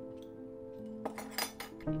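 A quick run of light clinks, a utensil tapping against a glass mixing bowl, in the second half, over soft background music with long held notes.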